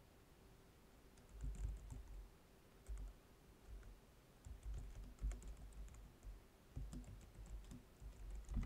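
Typing on a computer keyboard: quick clusters of key clicks, starting about a second in.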